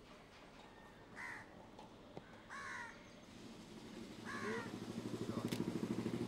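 Crows cawing outdoors, three calls spaced over the first few seconds. About four seconds in, a low, rapidly pulsing mechanical buzz starts and becomes the loudest sound.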